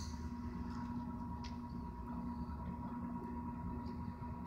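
Steady electrical hum over a low rumble: the room tone of a large indoor riding arena, with a few faint soft ticks.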